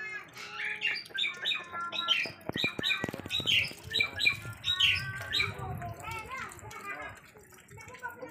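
A bird squawking in a rapid series of short, falling calls, about three a second, with a few sharp clicks around the middle.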